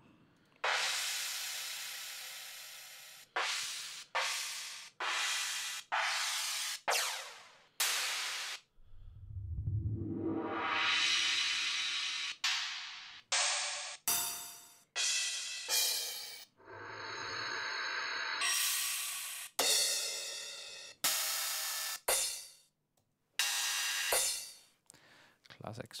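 Crash cymbal samples auditioned one after another, about twenty in all, each starting suddenly and fading or cut short when the next begins. Several are additive-synthesis crashes that ring with steady tones, and a couple swell up with a low rumble.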